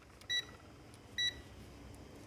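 MECO 108B+TRMS digital multimeter beeping twice, two short identical high beeps just under a second apart, as its rotary selector is switched from resistance to diode-test mode.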